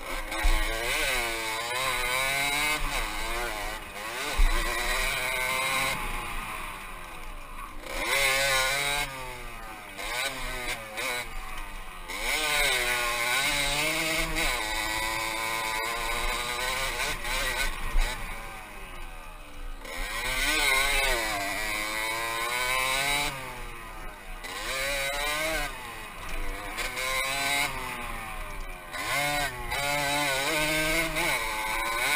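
Aprilia RX 50's 50cc two-stroke single-cylinder engine being ridden hard, its pitch repeatedly climbing under throttle and dropping back off through the ride. A few sharp knocks stand out, the loudest about four seconds in.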